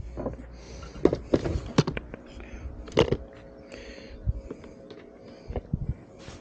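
Irregular knocks and clinks of a person moving about on a clay-tile roof and handling things, a few sharp ones about a second in, near three seconds and near the end, with a low rumble at the start.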